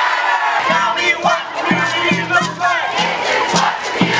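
Crowd of protest marchers shouting and chanting together, loud and overlapping. From about half a second in, a low musical beat sits underneath.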